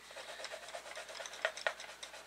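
Coloured pencil rubbing back and forth on a paper page in quick scratchy strokes, with a few sharp ticks in the second half.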